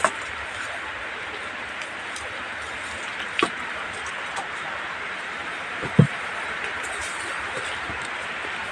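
Steady hiss of background noise while a phone is carried through dense forest undergrowth, with a couple of brief knocks and bumps from handling about three and a half and six seconds in.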